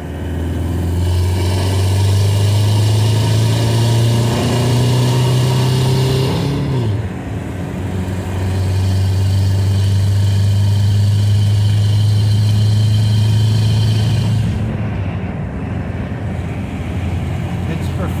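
Turbocharged VW 1.9 L ALH TDI four-cylinder diesel at full throttle under hard acceleration, heard from inside the cab with the turbo on boost. The engine note drops briefly about seven seconds in, as at a gear change, then pulls hard again and falls off near the end as the throttle eases.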